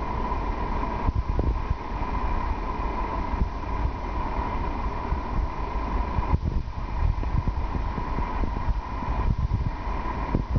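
Steady background noise with no speech: a low rumble with irregular soft thumps, a hiss, and a faint steady tone.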